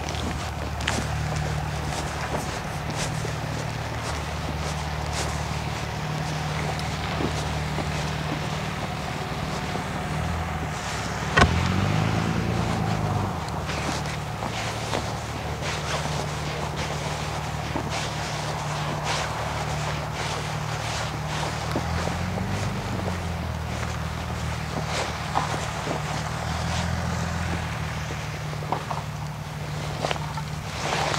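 An engine running steadily at a low hum, its pitch rising and falling briefly about eleven seconds in and again around twenty-two seconds, with scattered light clicks.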